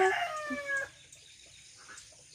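Rooster crowing: the drawn-out final note of a crow, sliding slightly down in pitch and ending about a second in, followed by faint background.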